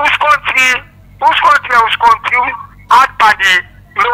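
Speech: a caller talking over a telephone line, in short phrases with brief pauses.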